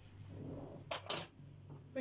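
Kitchen things being handled on a countertop: two quick, sharp clinks close together about a second in, after a soft rustle.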